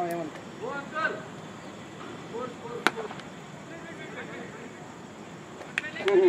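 A cricket bat striking the ball: one sharp crack about three seconds in.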